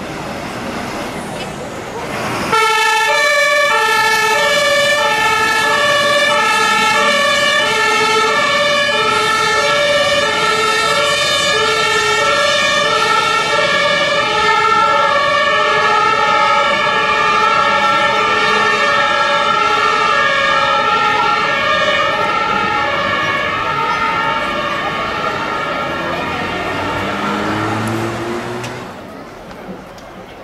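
German fire brigade two-tone sirens (Martinshorn) sounding on vehicles responding, alternating high and low pitch about once a second, with two horns overlapping slightly out of step. They start suddenly a couple of seconds in and stop near the end, when an engine rises in pitch.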